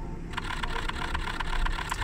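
Canon camera shutter firing in a rapid continuous burst, a quick even run of clicks starting a moment in, over low street traffic noise.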